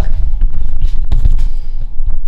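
Handling noise on a phone's microphone as the phone is picked up and carried: a loud low rumble with several knocks and rubs.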